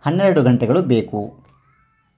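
A man's voice speaking for about a second and a half, then a pause.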